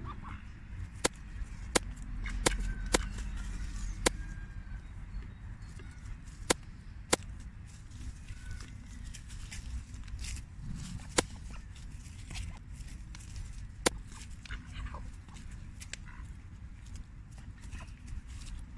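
Mallard drake foraging with its bill in dry leaves and soil: leaf rustling with about a dozen sharp, irregularly spaced clicks.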